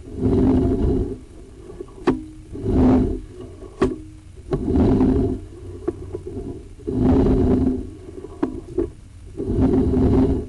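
Sewer inspection camera's push cable rubbing and scraping in repeated strokes as it is fed down the drain line, about one stroke every two seconds, with a couple of sharp clicks in between.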